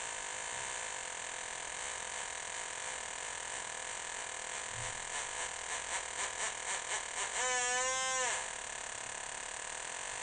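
Homemade metal detector's audio tone, a steady buzzing drone, begins to pulse about halfway through, the pulses coming faster and faster. It then swells into a louder tone that bends up and back down for about a second before dropping back to the steady drone: the detector picking up an aluminium pull tab held at the search coil.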